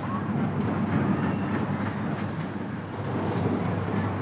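A steady low mechanical rumble with a faint rattle running under it.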